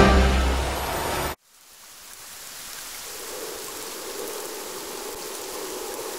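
Music fading out, cut off about a second in; after a moment of silence, a steady rain sound fades in and runs on.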